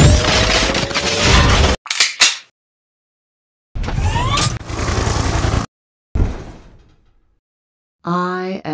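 Edited-in sci-fi sound effects of a robot transforming from helicopter to robot: bursts of mechanical whirring and clanking with rising whines, split by short silences, then a hit that fades away near the end.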